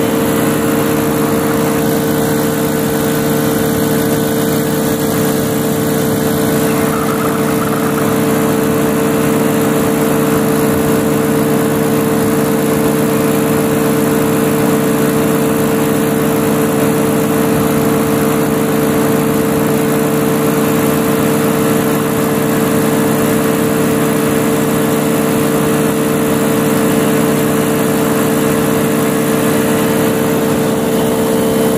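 Engine and propeller of a powered-paraglider trike running steadily in flight: a loud, constant drone with a strong unchanging hum, with no change in engine speed.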